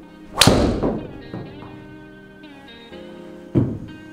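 A driver striking a golf ball off a hitting mat: one sharp, loud crack about half a second in, the sound of a solid, well-centred strike. A duller thud comes near the end, over background music.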